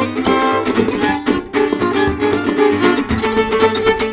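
Gypsy jazz played live by an acoustic trio: acoustic guitar to the fore in a driving rhythm, with hand strokes on a cajón and a violin.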